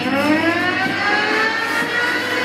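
A rising, siren-like whine in the dance music track: a stack of pitched tones that climbs quickly through the first second and levels off near the end.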